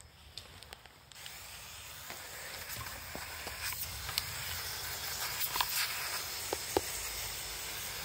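Hand-pump pressure sprayer (up to 3 bar) spraying a jet of water onto a muddy RC car chassis to wash the dirt off. A steady hiss starts about a second in and grows a little louder, with scattered small clicks of spray hitting the parts.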